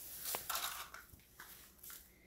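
Faint handling noise, with soft rustling and a short click about a third of a second in, as a plastic utility lighter is picked up and brought into position.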